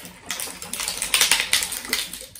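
Glass jar of water holding sand, shells and marbles being shaken hard: a rapid, dense clatter of marbles and shells knocking against the glass, with the water sloshing.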